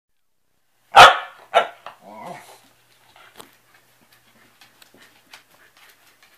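Dogs at play: two sharp barks about a second in, the first the loudest, then a smaller third and a short, lower growl. After that there are only scattered faint clicks.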